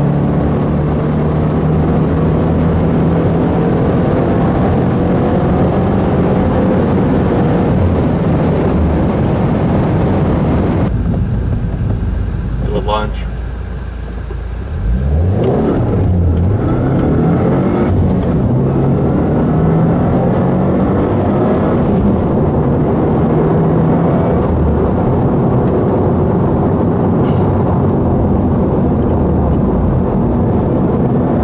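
2015 Subaru WRX's turbocharged flat-four engine heard from inside the cabin, pulling hard under full throttle with its pitch slowly climbing. The engine eases off about eleven seconds in and goes quieter for a few seconds, then revs back up and pulls again with rising pitch.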